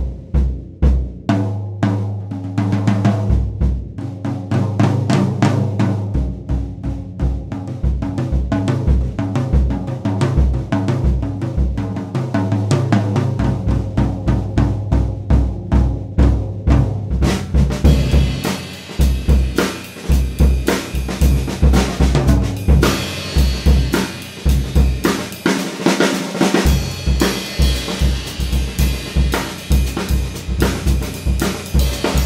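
Gretsch Brooklyn drum kit (20-inch bass drum, 12-inch rack tom, 14-inch floor tom) with a 4x14 brass-shell Ludwig Dance Model snare, played solo in a mid-range tuning, the bass drum fitted with a Renaissance head. Busy snare and tom strokes run over steady bass drum beats, with the toms ringing, and cymbals wash in heavily a little past halfway.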